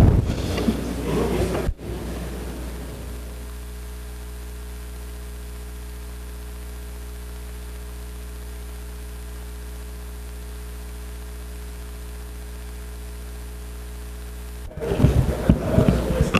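Steady electrical mains hum with a stack of even overtones from the chamber's audio feed, with no one at the microphone. It cuts in abruptly after a couple of seconds of faint room noise and stops just as abruptly near the end.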